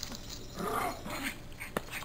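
Pomeranian puppies playing together, with a short, rough puppy sound about half a second in and a single sharp click near the end.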